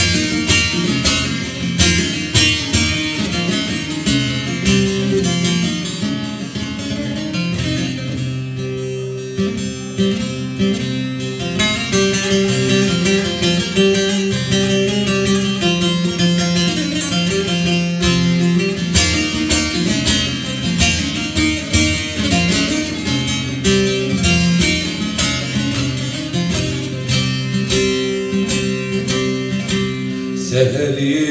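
Bağlama (Turkish long-necked lute) with a juniper body and spruce soundboard, strummed rapidly in an instrumental introduction, briefly thinning out about nine seconds in. The newly built instrument is being test-played.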